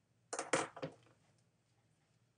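A quick clatter of plastic pens knocking on a desk, four or five sharp clicks within about half a second, as one pen is put down and another picked up.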